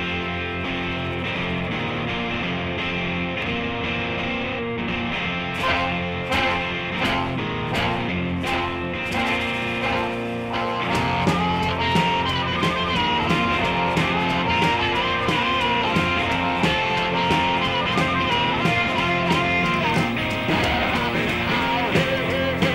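Background rock music with electric guitar and a steady beat; a guitar melody comes in about halfway through.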